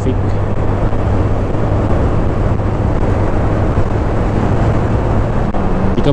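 Wind rush on an action camera's microphone, with the even drone of a Honda Beat scooter's single-cylinder engine underneath, while riding steadily.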